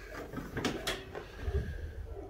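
A few light clicks and knocks, with two sharper clicks close together near the middle.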